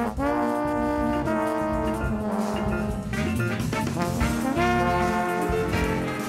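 Live big band playing a samba-jazz arrangement, the horn section holding a series of long sustained chords over the drums and bass.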